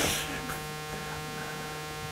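Steady electrical mains hum, a buzz with several overtones held at one pitch, carried in the microphone and sound-system feed.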